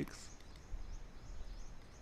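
Faint background hiss with a thin, steady high-pitched tone that shifts slightly in pitch; no clear event stands out.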